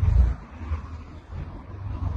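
Wind buffeting the microphone: a low, uneven rumble, loudest right at the start.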